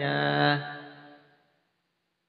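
A man's voice drawing out the last syllable of a word in one long, level tone that fades out after about a second, followed by dead silence.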